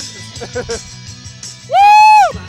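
Rock music playing over a PA. Near the end a man gives one loud, high 'woo!' whoop into the microphone that rises and falls in pitch.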